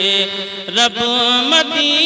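A man singing a naat into a microphone, drawing out one long wordless note that bends and glides in pitch.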